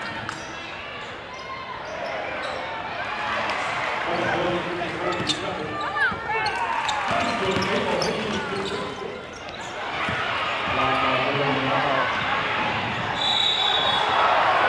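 Live sound of a basketball game in a gym: the ball dribbling on the hardwood, sneakers squeaking, and a crowd of voices chattering. Near the end a referee's whistle blows briefly.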